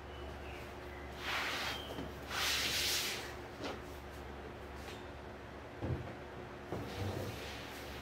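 Resin-bonded batting and a clear acrylic quilting ruler being slid and shifted on a cutting mat: two brief rustling swishes, a light click, then a couple of soft bumps.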